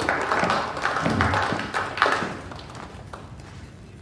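A run of light taps and knocks over a noisy hiss, busiest in the first two seconds and then fading away.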